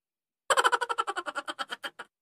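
An edited-in comic sound effect: a rapid rattle of pitched pulses, about eleven a second, that starts sharply about half a second in and fades away over about a second and a half.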